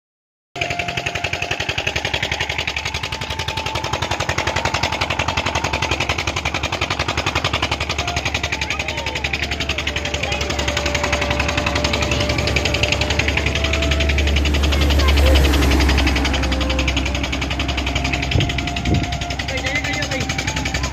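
Tube-well pump engine running with a rapid, even chugging, while water pours from its outlet pipe. It cuts in sharply about half a second in and swells a little near the three-quarter mark.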